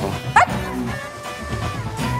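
Background score with steady sustained tones, and one very short swooping sound effect about half a second in.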